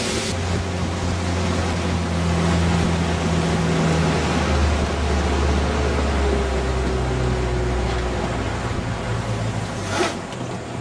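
A small motor skiff's engine running steadily under way, with water and wind rushing past the hull. The engine note shifts about four seconds in and falls in pitch in the second half as the boat slows.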